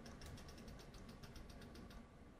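A stylus pen tapping and ticking on a tablet screen as words are handwritten: a rapid run of faint light clicks, several a second.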